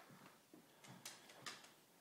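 Near silence with a few faint, scattered clicks: a dog's claws on a hardwood floor.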